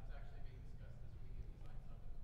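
Faint, distant voice speaking off-microphone over a steady low room hum.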